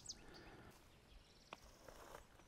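Near silence outdoors: faint quiet ambience with a faint high, evenly pulsing trill and one soft click about three quarters of the way through.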